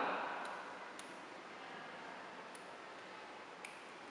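A few faint, sharp clicks, spread out over several seconds, from a microscope eyepiece tube being slowly unscrewed by gloved hands, over a steady low hiss.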